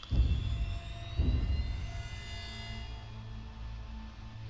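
Film score from the fan film's soundtrack: a dark, sustained drone with held high tones over a deep rumble that swells twice in the first second or so.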